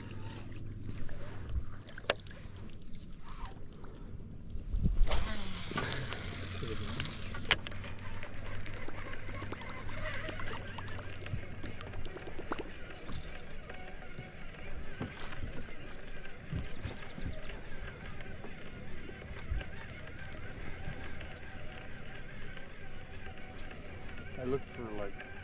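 Small fishing boat with an electric trolling motor humming steadily for about the first half. A loud rushing noise lasts about two seconds, starting about five seconds in, and scattered clicks and knocks of fishing gear against the boat come through.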